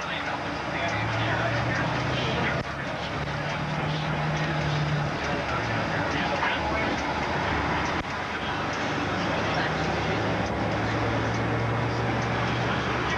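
Bus engine running with road noise heard from inside the cabin as it drives through city streets. The low engine drone steps up in pitch for a couple of seconds a few seconds in, then drops back.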